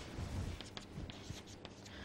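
Faint scratching and light ticks of a pen writing.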